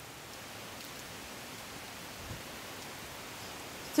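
Steady rain falling in a windy storm, an even hiss.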